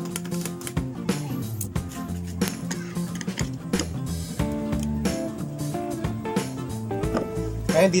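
Karaoke backing track playing from a videoke machine: music with steady held notes, a bass line and a regular beat.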